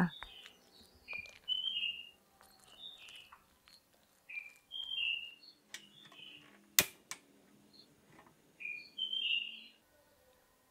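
Birds chirping in short calls, repeated every second or so. About seven seconds in there is a single sharp click as the knob of a portable gas stove is turned to light it.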